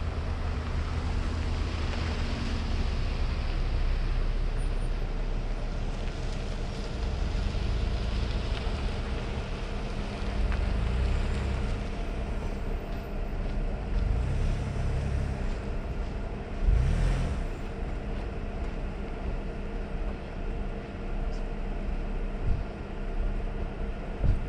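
Steady motor-vehicle noise: a low running drone with faint steady hum tones, swelling now and then, with a louder brief surge about two thirds of the way through.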